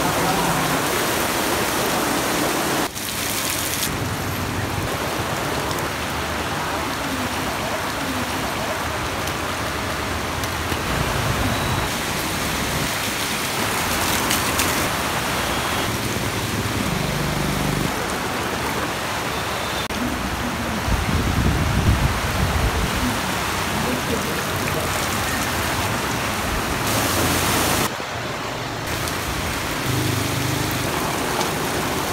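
Heavy rain pouring onto a flooded street, a dense steady hiss, with a motor vehicle's engine rising briefly above it a little past the middle.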